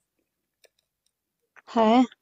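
Near silence in a pause of a voice call, with one faint short click about two-thirds of a second in. A person's voice starts speaking near the end.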